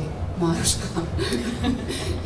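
A woman chuckling softly, mixed with a few short spoken fragments.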